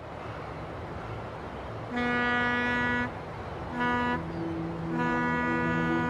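Ship horns sounding over a steady low rumble: a blast of about a second, a short blast, then a longer blast, with a second horn of a different pitch joining in and holding on.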